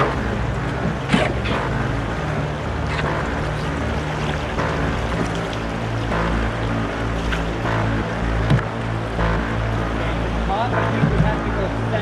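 Fast river rapids rushing around a canoe, with a few short paddle splashes. Background music with steady held low tones plays underneath.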